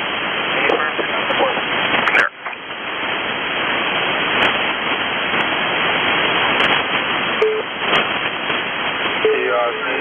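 Shortwave single-sideband receiver hiss and static on the 6577 kHz HF aeronautical channel between transmissions, dropping out briefly about two seconds in. A voice begins to break through the noise near the end.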